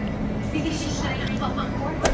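Faint, broken speech over a steady low background rumble, quieter than the talk around it.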